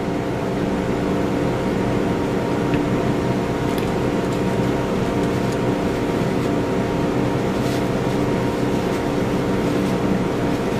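Steady mechanical hum made of several constant low tones, unchanging throughout, with a couple of faint clicks.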